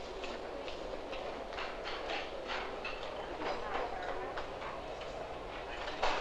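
Busy breakfast-table clatter: rapid, irregular clicks and rustles of dishes, cutlery and a small cardboard cereal box being opened.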